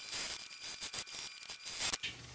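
Electric sewing machine stitching through layered cotton fabric: a fast, even run of needle strokes with a faint high motor whine, stopping just before the end.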